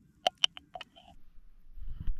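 A metal knife blade tapping against a glass mason jar four times in quick succession, knocking off chimichurri. A low rumble follows near the end.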